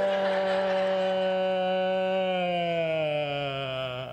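A single voice holding one long drawn-out note that slowly sinks in pitch and fades out near the end.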